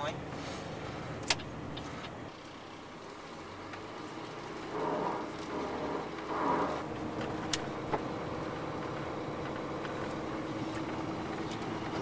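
Steady drone of a snowplow truck driving on a snowy road, heard from inside the cab, with two sharp clicks.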